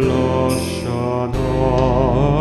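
Slow vocal music: several voices holding long notes in harmony, with a change of chord about a second and a half in.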